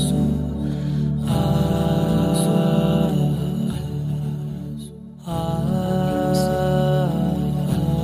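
Background music: a wordless vocal track of long held "ah" notes, sliding between pitches, which fades briefly about five seconds in and then comes back.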